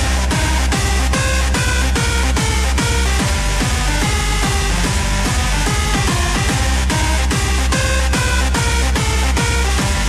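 Electronic dance music from a DJ mix: a steady kick drum and deep bass come in together right at the start, under a repeating synth pattern.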